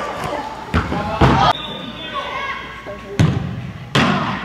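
Soccer ball being kicked and thudding in an indoor arena: a few sharp thumps, one about a second in, another just after, and a louder pair near the end, each with a short echo off the hall's walls. Players' voices call out between them.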